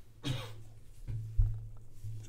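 A man coughs once, about a quarter of a second in. Near the middle comes a brief, dull thump over a steady low hum.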